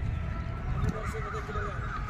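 An animal's wavering call, starting just under a second in and lasting about a second, over a steady low rumble.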